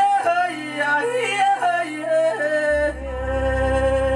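A lead singer performing a Rwandan song: an ornamented vocal line that slides and bends between notes over a sustained keyboard chord, settling onto one long held note about three seconds in as a deep bass note comes in.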